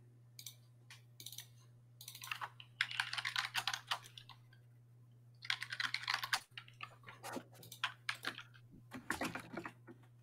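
Typing on a computer keyboard in two quick runs, about two seconds in and again past the middle, with a few single key clicks around them. A steady low electrical hum lies underneath.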